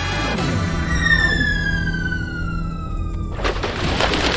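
Cartoon sound effects over background music: a falling whistle-like glide lasting about two seconds, then a sudden splashing crash near the end as a cup of paint water tips over and spills.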